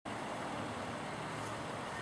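Steady background noise: an even hiss with no distinct sounds in it.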